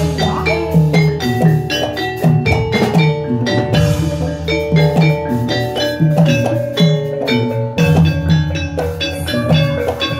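Gamelan music accompanying a jathilan dance: struck metallophones play a fast, repeating melodic pattern over steady drum beats.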